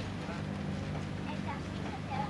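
Indistinct background voices over a steady low hum.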